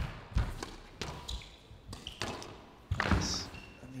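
Squash ball being struck by rackets and hitting the court walls during a rally: about five sharp knocks at uneven intervals.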